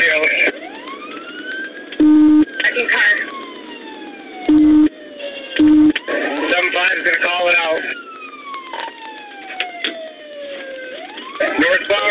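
Police car siren on a slow wail, its pitch climbing and then sliding back down in long cycles of about five seconds, heard from inside the pursuing cruiser. Three short, loud low beeps cut in about two, four and a half and nearly six seconds in.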